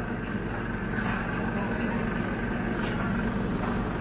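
Busy restaurant background: indistinct chatter of other diners over a steady low hum, with a couple of faint clinks.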